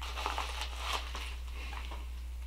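Faint crinkling and rustling of small plastic packets being handled, with a few light clicks, over a steady low hum.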